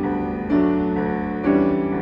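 Grand piano played slowly, a new chord struck about once a second and left to ring and fade before the next.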